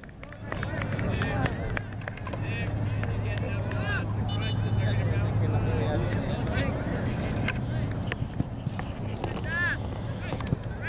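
Distant high-pitched shouts and calls of players and spectators on a soccer field, coming and going, with a louder call near the end, over a steady low rumble.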